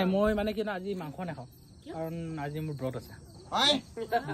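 People talking in short phrases, with crickets chirping faintly and steadily in the background. A brief, sharp voiced exclamation comes near the end.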